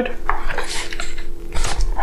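Metal hand tools clinking and rattling in the pockets of a loaded DEWALT DG5582 fabric tool tote as it is turned around, with the bag's fabric rustling.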